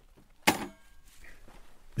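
A feeding-cage door being shut, one sharp knock about half a second in that dies away quickly. It is the sound some lynx have learned to take as a dinner bell.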